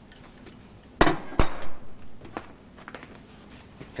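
A cloth-wrapped pistol set down on a props table among plates and cutlery: two sharp knocks about a second in, half a second apart, the second with a short metallic clink.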